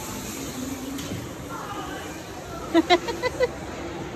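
Go-karts pulling away from the start line in a large indoor hall: a low, steady hum with no distinct engine note. A few short excited shouts break in about three seconds in.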